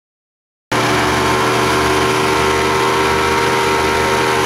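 Towing motorboat's engine running steadily at speed, under a constant rush of wind and water. It starts abruptly less than a second in.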